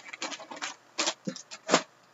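Plastic shrink-wrap on a trading card box crinkling as it is handled: a string of short, sharp crackles, the loudest one near the end.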